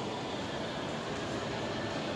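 Steady background noise of a large indoor lobby: a continuous hum and hiss with no distinct events.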